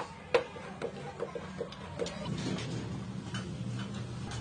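Wooden staves knocking against each other as they are fitted into a ring. There are two sharp knocks at the very start, then lighter, irregular taps over the next couple of seconds, over a steady low hum.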